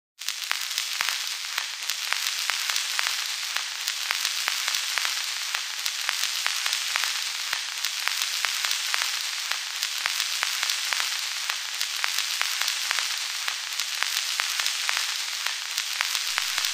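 Crackling hiss at the start of a dub techno track: a steady high hiss dotted with many irregular clicks and crackles, with no beat or notes yet.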